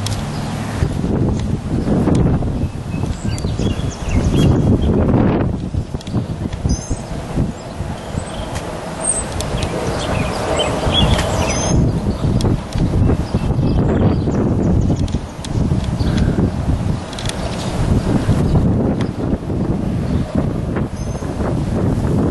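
Wind buffeting the camera microphone outdoors, a loud low rumbling noise that swells and dips unevenly throughout.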